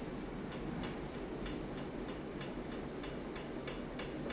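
Quiet, steady ticking, about two ticks a second, over low room tone.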